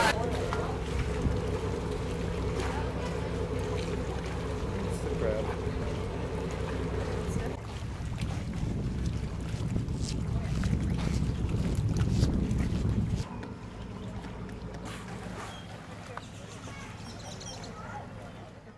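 A boat's engine hum, steady and even, with wind noise on the microphone over open water. About 13 s in it cuts off sharply to a quieter outdoor background.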